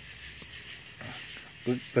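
Faint steady hiss with a few soft crackles from the fire of burning coals and applewood chips under the open grill grate. A short voiced sound comes near the end.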